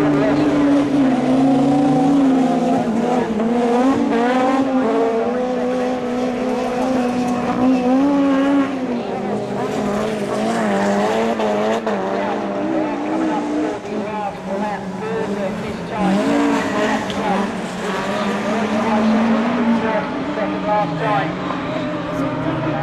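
Rallycross cars' engines running hard as they race. Their loud engine notes rise and fall repeatedly as they accelerate and ease off through the corners.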